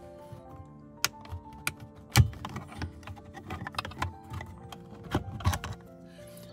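Irregular plastic clicks and taps as the middle trim section of a Porsche Panamera's rear-view mirror cover is worked loose by hand, with a louder knock about two seconds in. Soft background music plays underneath.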